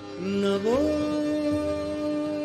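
A male ghazal singer sings a short phrase, then glides up about half a second in to a long held note over a steady instrumental drone.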